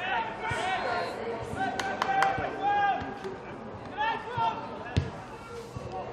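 Players shouting and calling to each other across a Gaelic football pitch in live play, with a few sharp thuds around two seconds in and again near the end.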